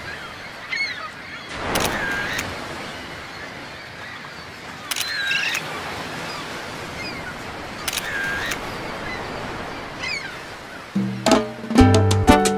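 Seagulls calling over a steady wash of ocean surf, one swooping cry about every three seconds. Salsa music starts near the end.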